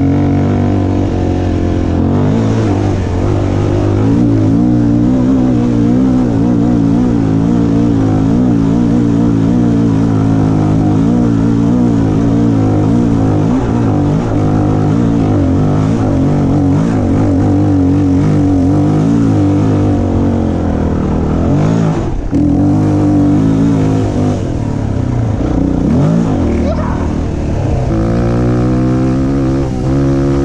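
Dirt bike engine running at steady revs while the bike is ridden along a dirt trail. The revs dip briefly twice about two-thirds of the way in, then climb near the end.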